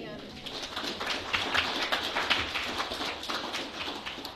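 Small audience applauding, the clapping swelling about half a second in and thinning out near the end.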